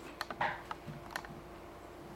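A few faint, sharp clicks, about five, scattered through the first second or so, over a faint steady hum.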